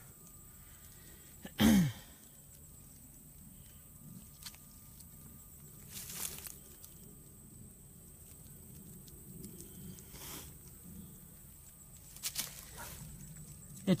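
Footsteps through dry leaf litter and twigs, with a few scattered crunches and snaps. About two seconds in comes one short vocal sound that falls in pitch.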